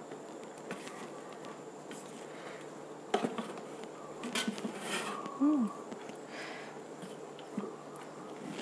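Wooden spatula stirring and fluffing cooked basmati rice in an electric pressure cooker's inner pot: soft scraping, with a few light knocks against the pot around three and five seconds in, over a faint steady hum.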